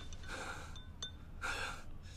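A man breathing heavily: two gasping breaths about a second apart.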